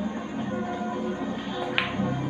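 A single sharp click of a pool shot, cue and ball striking, about three-quarters of the way through, over steady background music.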